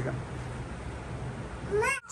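Low room noise, then near the end a short rising high-pitched cry from a small child.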